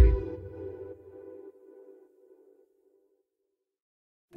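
Background music ending: a last held chord fades out over about two seconds, then silence.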